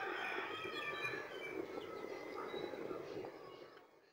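Small birds chirping faintly in the background over a low, steady bubbling hiss from a pot of biryani gravy simmering. The sound slowly fades toward the end.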